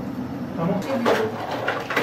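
Speech only: a voice says "tamam" (okay) in Turkish, with other brief talk around it.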